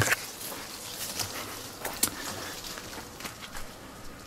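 Soft rustling of leaves with a few light clicks and snaps as a handheld camera brushes through a strawberry guava bush.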